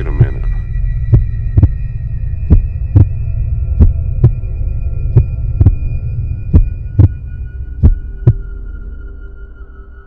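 Cinematic soundtrack: a heartbeat-style double thump about every 1.3 seconds over a low droning bass and steady high tones, opening with a hit. The thumps stop near the end and the drone fades away.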